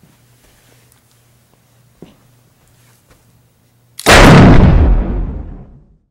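A faint steady hum with a few small clicks, then about four seconds in a sudden, very loud bang that dies away over about two seconds.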